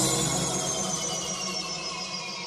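Break in a dance-music mix: the beat has stopped and a high synth sweep glides slowly downward over a sustained tail, fading steadily.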